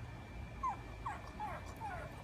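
Pug puppy whining in frustration at not getting its stick through a fence doorway: four short, high, falling whimpers about half a second apart, starting about half a second in.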